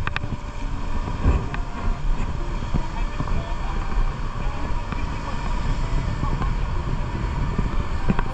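Wind buffeting the microphone in a steady low rumble, over the wash of choppy sea against a concrete harbour wall.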